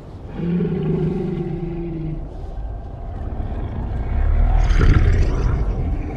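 Film sound effects: a Night Fury dragon gives a low, held vocal call lasting about two seconds. About four seconds in comes a loud rumbling rush.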